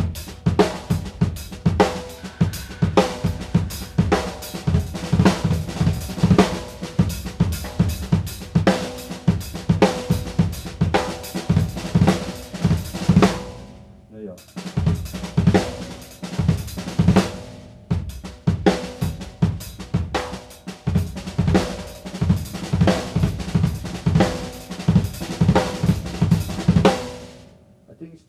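Acoustic drum kit with AAX cymbals played in a fast, continuous passage of snare, bass drum, hi-hat and cymbals. The playing breaks off briefly about halfway, starts again, and stops just before the end.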